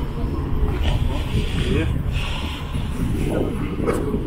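Indistinct voices talking, with a steady low background rumble.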